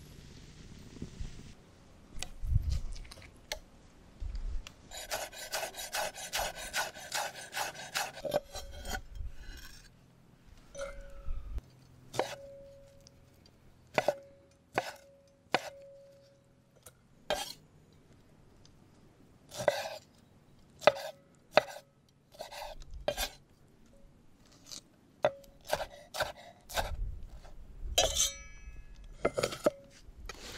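Kitchen knife chopping grilled pineapple and red onion on a wooden cutting board. A quick run of cuts comes first, then separate sharp knocks, some ringing briefly.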